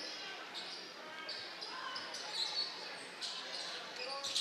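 Basketball game play on a hardwood gym court: a ball being dribbled and sneakers squeaking in short high chirps, over a murmur of crowd and player voices in the hall.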